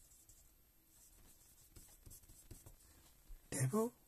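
Red pencil writing a word on paper: faint, short strokes of the lead across the sheet.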